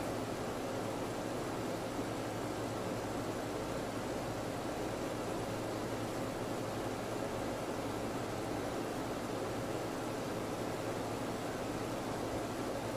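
Steady room tone: an even hiss with a low hum underneath, unchanging throughout.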